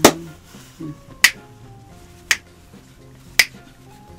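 Sharp finger snaps, about one a second in an even beat, over faint background music.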